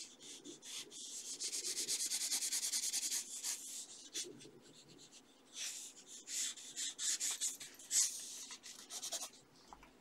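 Pencil scribbling on sketchbook paper. About a second in comes a quick run of hatching strokes, roughly ten a second, and after that scattered single strokes and scratches.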